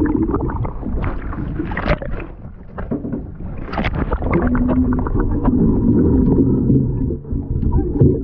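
Muffled underwater sound of water moving and bubbles crackling around a swimmer, over a low rumble. The crackling is busy in the first half, then the sound settles into a steadier low hum.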